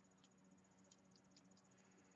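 Near silence: faint room tone with a low steady hum and a few tiny ticks.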